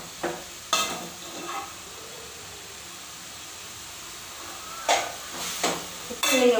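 Steel spatula stirring and scraping chopped banana flower around a steel pan over a gas flame, with a steady sizzle from the frying. Sharp scrapes against the pan come twice about a second in and twice near the end, with a quieter stretch of plain sizzling in between.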